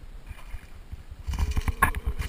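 Low rumble of wind and handling noise as a hooked bass is brought to a jon boat, then a cluster of knocks and clatter about one and a half seconds in as the fish comes aboard.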